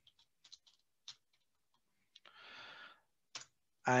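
Computer keyboard keys tapped faintly and unevenly as a search term is typed, a few separate clicks spread over the seconds, with a brief soft rush of noise a little past halfway.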